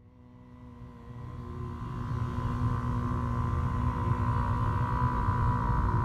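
Ambient drone music of sustained steady tones fading up from silence over the first two seconds, over a steady low rumble.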